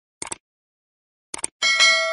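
Sound effects for a subscribe end screen: two quick double clicks, then a bright bell ding near the end that rings on and starts to fade.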